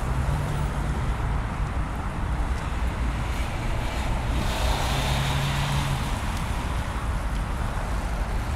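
Road traffic noise from a wide city street: a steady wash of car and tyre noise, with a low engine drone that swells as a vehicle goes by about four to six seconds in.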